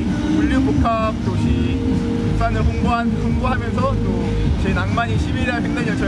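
A man speaking Korean over a loud, steady low rumble of background noise.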